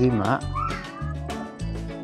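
Background music with a steady beat, and a high voice-like sound that slides up and down in pitch in the first second.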